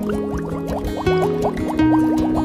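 Background music: held low notes under a busy stream of short rising, bubble-like blips, several a second.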